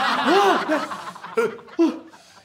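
A man crying in loud, exaggerated sobs: a run of short rising-and-falling wails in the first second, then two shorter sobs near the end.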